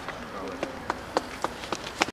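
Sparse hand clapping: a few sharp, separate claps, roughly three or four a second, as the speech ends.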